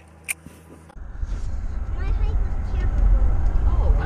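Steady low road and engine rumble inside a moving SUV's cabin, starting abruptly about a second in. A single sharp click comes just before it.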